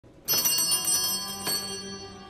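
Small hand bells rung as the entrance procession begins, struck several times in quick succession from about a quarter second in. Their bright, high ringing fades away toward the end, and a low steady note comes in underneath about a second in.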